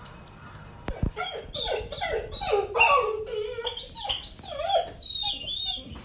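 A dog whining and whimpering in a run of short, high cries that waver up and down in pitch, starting about a second in.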